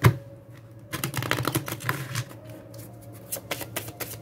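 A deck of tarot cards being riffle-shuffled by hand, the two halves fluttering together in fast runs of clicks about a second in and again near the end. A sharp knock comes right at the start.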